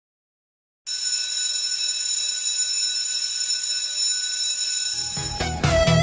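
After a moment of silence, an alarm bell rings steadily for about four seconds, a high, unchanging ring. Music fades in under it near the end.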